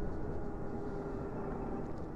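Wind and tyre noise while riding a Zero SR electric motorcycle, easing off from about 45 to about 30 km/h, with a faint steady hum underneath.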